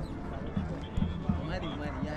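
Other people's voices chattering in the background, with repeated low thumps.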